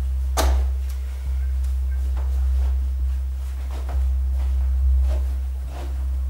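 A deep, steady bass drone from the film's soundtrack, stepping to a new pitch a couple of times, with scattered knocks over it: one sharp knock about half a second in, then fainter ones about once a second.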